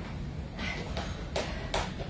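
Four short, soft noise bursts from people doing dumbbell single-leg squats onto a bench, over a low steady room rumble.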